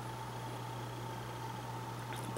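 Room tone: a steady hiss with a constant low hum and a faint thin whine, with nothing else happening.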